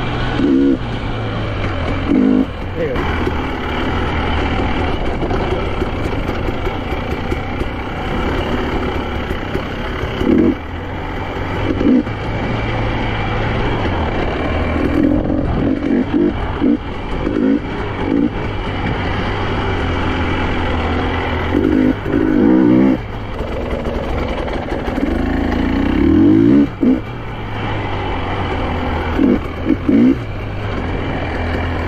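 2023 KTM 300 EXC's two-stroke single-cylinder engine under a trail ride, its revs rising and falling with repeated throttle bursts, several of them louder, every few seconds.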